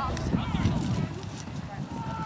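Sideline sound of a youth soccer match: faint, distant voices of players and spectators over an irregular low rumble, with a couple of short sharp knocks.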